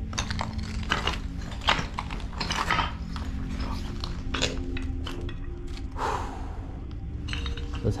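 Footsteps crunching over brick rubble and leaf litter on a floor, an irregular string of sharp clicks and crunches.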